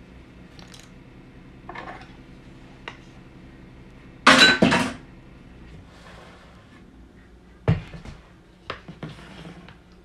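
Kitchen utensils and dishes clattering on a wooden table: a loud, ringing clatter of two or three quick strikes a little over four seconds in, then a single thump and a few lighter knocks near the end.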